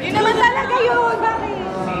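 People talking and chattering, with a voice plainly in front and others behind it; no words come through clearly.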